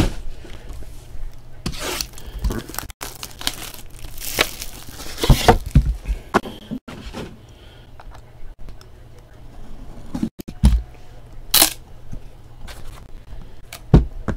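Plastic wrap being torn and crinkled off a sealed trading-card box, with several sharp knocks as the box and its inner case are handled and the case lid is opened.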